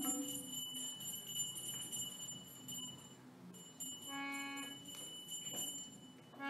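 Quiet devotional music: a harmonium sounds two short held chords, the first about four seconds in and the second near the end, over a faint steady high-pitched tone.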